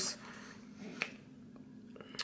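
Paper sticker sheets being handled, with one sharp click about a second in and faint ticks near the end.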